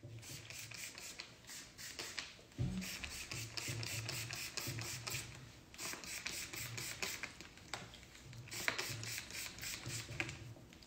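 A series of short, irregular rubbing and hissing strokes close to the microphone as long hair is misted from a plastic spray bottle and worked through by hand.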